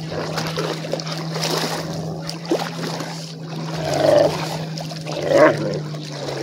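Shallow lake water splashing and sloshing as a person wades through it, over a steady low hum. Two short, louder pitched sounds break through, about four seconds in and again about a second and a half later.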